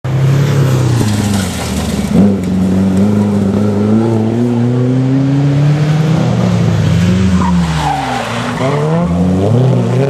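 Rally car engines revving hard, their pitch climbing and falling through gear changes, with a short loud crack about two seconds in. Near the end the revs drop sharply and then climb again as a car accelerates away over gravel.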